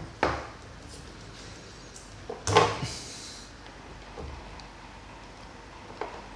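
Handling knocks and rustles from a roll of black electrical tape being worked around coax cable on a tabletop, with a sharp knock just after the start and a louder clatter about two and a half seconds in, followed by a brief hiss.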